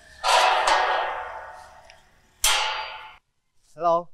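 A sheet-metal gate being unlatched and swung open: two sudden metallic clanks, the first about a quarter second in and the second about two and a half seconds in, each ringing away. A short voiced exclamation follows near the end.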